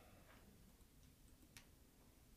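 Near silence: room tone with a few faint clicks of a computer mouse, the clearest about one and a half seconds in.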